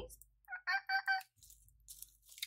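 A woman making a silly high-pitched vocal noise: about four quick squeaky notes in a row.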